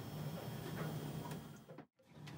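Faint steady low hum with a few light ticks. The sound cuts out completely for a moment near the end.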